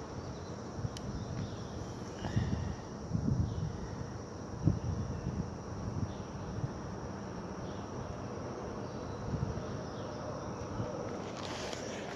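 Outdoor ambience with a steady faint high insect buzz, and a few soft low bumps in the first half.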